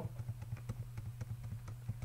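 Rapid, faint light clicks of a computer mouse, about eight to ten a second, as the file list is scrolled.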